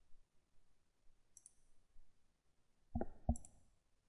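Quiet, then two computer mouse button clicks about a third of a second apart, about three seconds in.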